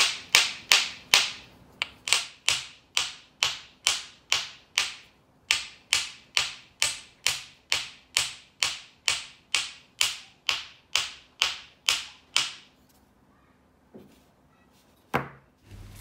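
Small hammer striking a hand-held piece of dried homemade cold porcelain (air-dry clay made with carpenter's white glue), sharp taps at about two and a half a second for some twelve seconds; the piece rings back hard and does not break, showing it has cured fully hard. One more faint knock and a click follow near the end.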